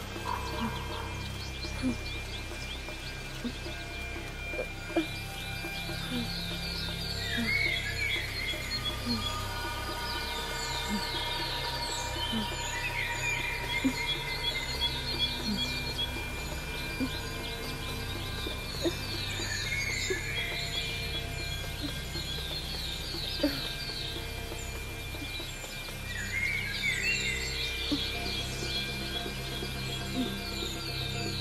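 A low, steady film-score drone under forest ambience, with bird chirps and trills repeating throughout and faint scattered ticks.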